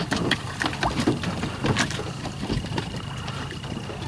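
Small motor boat's engine idling steadily, with scattered knocks of wood and bamboo against the hull and platform.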